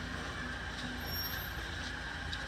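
Steady background rumble and hiss with no distinct event.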